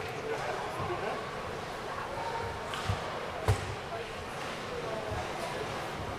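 Ice hockey game in a rink: steady background noise with distant voices, and two sharp knocks from the play about three seconds in, the second the louder.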